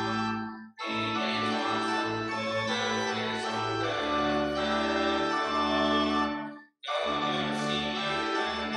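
Church organ playing a hymn in long held chords, breaking off briefly twice, about a second in and near the end, between phrases.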